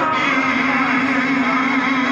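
A man reciting a naat unaccompanied into a microphone, holding one long sung note after a run of ornamented melody.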